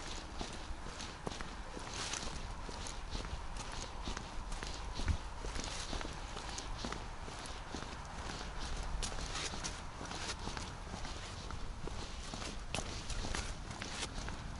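Footsteps of a person walking at a steady pace on paving stones, with a low steady background rumble. There is a single low thump about five seconds in.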